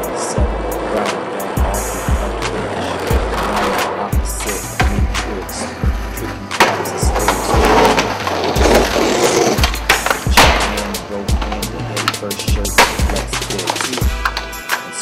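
Hip-hop beat with deep bass notes about once a second, mixed with skateboard sounds: urethane wheels rolling on concrete and sharp clacks of the board popping and landing.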